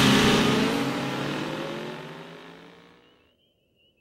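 Cartoon sound effect of a pack of fan-driven armoured vehicles roaring off together, their engine noise fading away over about three seconds. A faint, wavering high whistle follows near the end.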